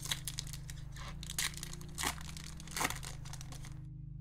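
Foil booster pack wrapper crinkling and tearing as a Yu-Gi-Oh pack is opened by hand, with several sharp crackles, the last just before the end.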